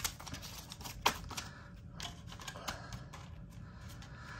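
Paper banknotes being handled and set into a clear plastic cash-sorting tray: soft paper rustling with scattered light clicks and taps, the sharpest about a second in.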